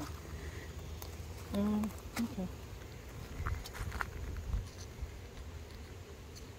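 A few light clicks and taps of a steel hive tool against the wooden box of a Flow hive super, over a low steady rumble.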